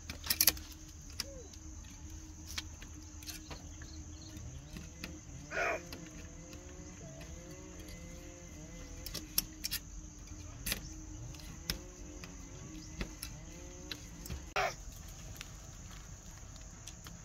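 Pliers and binding wire being twisted tight around a bamboo rail on a woven bamboo wall: scattered small clicks and a few louder clusters of knocks and rattles. A steady high insect drone runs underneath, with faint animal calls repeating in the middle.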